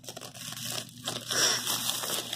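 Clear plastic packaging wrap crinkling and tearing as hands pull it off a rolled rubber bath mat, louder in the second half.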